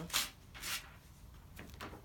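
A slip of paper rustling in two short bursts as it is handled.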